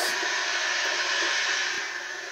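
Steady background hiss with a faint high whine, dropping a little in level near the end.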